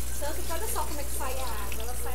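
Tap water running steadily onto rice being rinsed in a plastic colander, played back from a cooking video, with a woman's voice talking faintly over it and a steady low electrical hum.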